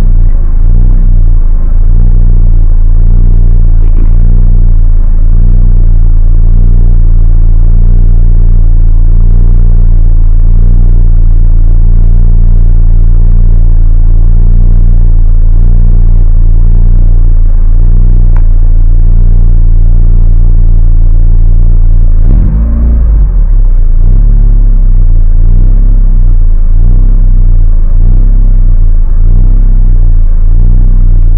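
Race car's engine idling steadily, heard loud from inside the cabin, with one short surge in the low rumble about three-quarters of the way through.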